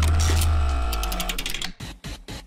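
Edited-in transition sound effect: a deep low hit that fades away over about a second and a half under a ringing tone and a run of rapid mechanical ticks.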